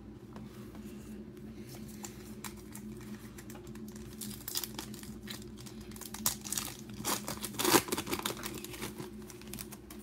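A trading-card pack wrapper being torn open and crinkled by hand, the crackling growing busier from about four seconds in and loudest a little after seven seconds. A steady low hum runs underneath.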